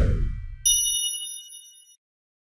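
Audio logo sting: a whoosh that sweeps down from high to low over a low rumble, then, about two thirds of a second in, a bright bell-like chime chord that rings and fades out.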